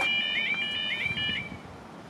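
Level crossing audible warning alarm sounding a rapid, repeating high warble. It cuts off about one and a half seconds in as the barriers come fully down across the road.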